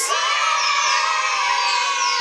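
A group of children cheering together in one long, steady shout.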